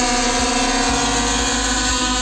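DJI Phantom 4 Pro quadcopter hovering under a heavy hanging load of about 1 kg, its propellers giving a loud, steady whine; the motors are working at full load, far louder than the drone normally runs.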